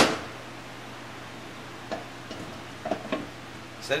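Powerglide transmission pump parts being handled: one sharp metal clank at the start with a short ringing tail, then a few faint, light clicks as the pump body is positioned over the case.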